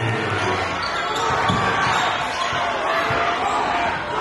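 A basketball bouncing a few times on a hardwood court, heard in a reverberant gym over steady crowd chatter and shouting voices.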